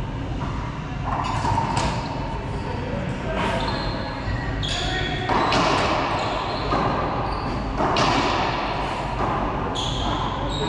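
Racquetball rally: the hollow rubber ball is struck by racquets and hits the court walls again and again, sharp cracks about every one to two seconds, each ringing in the enclosed court. Short high squeaks of sneakers on the hardwood floor come in between.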